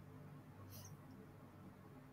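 Near silence: faint room tone over a video-call line, with one brief, faint high-pitched click a little under a second in.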